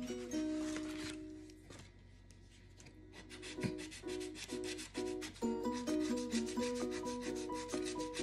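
A scratch-off lottery ticket being scratched in quick repeated strokes, with a short lull about two seconds in. Soft music with a repeating melody plays underneath.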